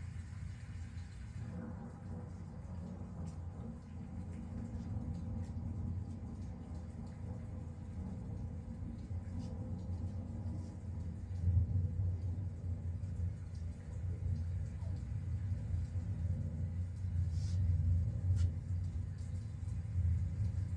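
Recorded thunderstorm sounds playing: a steady low rumble of thunder that swells louder about halfway through and again near the end.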